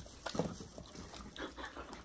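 A Samoyed eating shredded boiled chicken from a stainless steel bowl: a quick, irregular run of chewing, lip-smacking and licking sounds.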